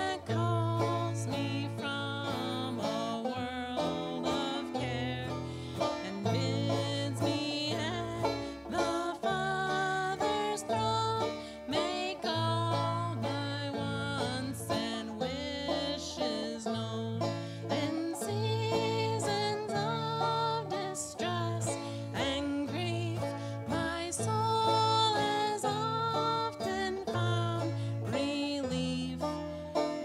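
Gospel song in bluegrass style: a banjo picked in quick, bright notes, backed by held low bass-guitar notes and acoustic guitar.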